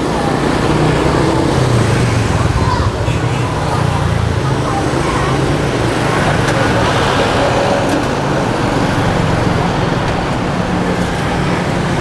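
Steady noise of a street-food stall: gas burners running under the bánh xèo woks, with street traffic and indistinct voices behind.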